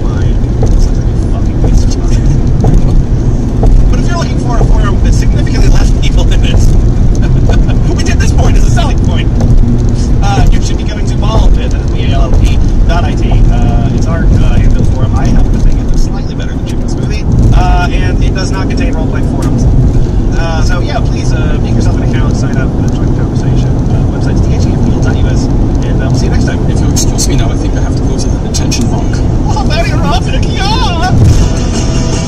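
Steady low road and engine rumble inside a car's cabin at highway speed, with faint, indistinct talking in the background.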